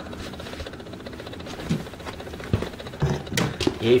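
A few scattered light knocks and clicks as an automotive flex fuel (ethanol content) sensor is handled and tipped over a container to drain the E85 out of it. The knocks are sparse in the second half, after a quieter start.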